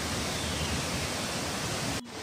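Waterfall running in spate after rain: a steady rush of falling water that cuts off suddenly at the end.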